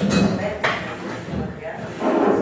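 Indistinct, unclear speech picked up by a table microphone, with a single knock about two thirds of a second in.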